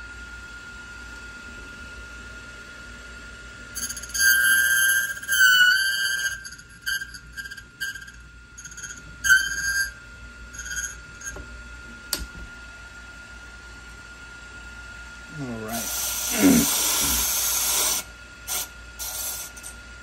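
Key-duplicating machine running with a steady motor whine. About four seconds in, and briefly again near nine seconds, its cutting wheel grinds into a brass key blank with a ringing squeal. Near the end the cut key is held to the deburring wheel for about two seconds, making a harsh rasping hiss.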